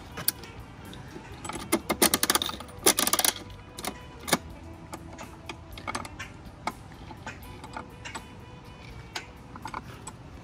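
Coin-operated feed dispenser being worked by hand. Its metal crank knob turns with two quick runs of ratcheting clicks and rattles about two and three seconds in. Scattered single clicks follow as the chute flap is handled.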